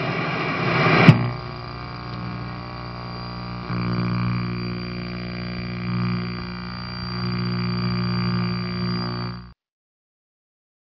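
Sound-effect outro: a television-static hiss cut off by one sharp click about a second in, then a low, steady electronic drone with a thin high whine over it. The drone swells slightly a few times and stops suddenly near the end.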